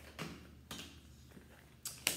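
Tarot cards handled and drawn from the deck, a few faint soft ticks, then a sharper light tap near the end as a card is laid on the glass tabletop.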